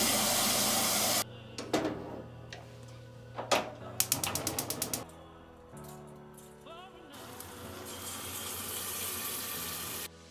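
Kitchen tap spraying water into a metal pot for about a second, cutting off suddenly. Then come kitchen clicks and clatter, including a quick run of clicks, and a steady hiss that builds over the last few seconds, under soft background music.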